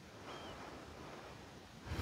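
Quiet room tone: a faint, steady hiss, with a brief faint high chirp about a third of a second in and a low rustle rising just at the end.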